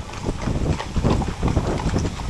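Many horses' hooves clip-clopping on a cobblestone street as a column of mounted cavalry walks past, the hoofbeats overlapping in an uneven clatter.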